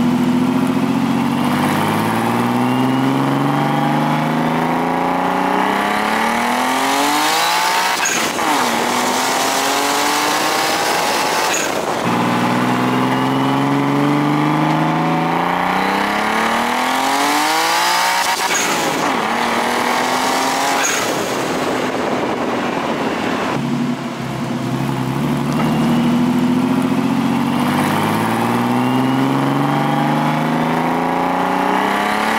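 Turbocharged Nissan RB20DET straight-six in a 240SX accelerating hard, its note climbing in pitch through the gears, then falling away with a rushing noise as it comes off boost. The wastegate screamer pipe vents through the hood. The run repeats about three times.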